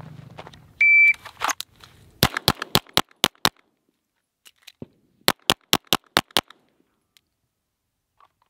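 Shot-timer start beep, then an Atlas Gunworks Athena Tactical 2011 pistol firing a fast string of about six shots, a brief pause for a magazine reload, and a second fast string of about six shots.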